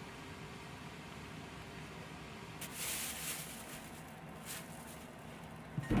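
Water from a kitchen tap hissing into a stainless steel sink in two short runs, over a low steady kitchen hum, with a single knock near the end.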